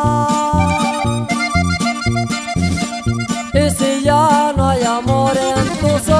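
Instrumental norteño music: an accordion carries a wavering melody over plucked-string chords and bass in a steady, bouncing ranchera rhythm.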